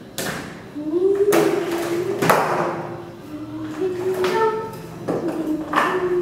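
Several sharp knocks and thumps, the loudest about two seconds in, over a held pitched tone that moves up and down in steps.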